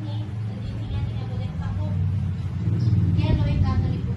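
A steady low rumble, louder in the second half, with voices talking over it.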